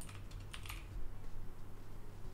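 Computer keyboard typing: a few quick keystrokes in the first second, then only a faint steady low hum.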